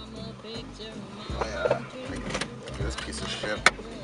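Parking-gate ticket dispenser giving a single sharp clack near the end, over the low hum of the idling car.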